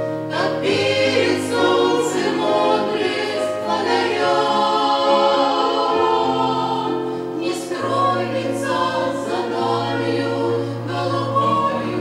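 A group of women singing a Russian Christian hymn in harmony into microphones, with long held low notes beneath the voices that change every couple of seconds.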